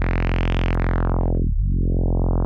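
Low synthesizer saw-wave tone through chained Playertron Jadwiga one-pole filters acting as a steep resonant low-pass. The cutoff sweeps up to its brightest about half a second in, closes to a dull low tone about a second and a half in, and starts opening again, with the resonant peak whistling along the sweep.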